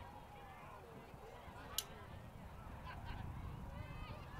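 Faint, overlapping distant calls and shouts across the field, with one sharp click about two seconds in.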